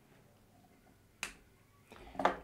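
A single sharp click about a second in: a USB-C hub connector snapping into the tablet's Type-C port. Otherwise near silence.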